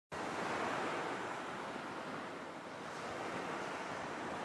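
A steady rushing noise, like wind or surf, with no pitch or rhythm, starting abruptly just after the beginning.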